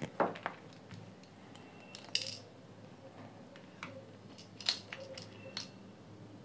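Small plastic parts of a JBL Flip 2 speaker being handled during disassembly: a scatter of short, sharp clicks and light scrapes. The loudest click comes right at the start and a brighter scrape about two seconds in.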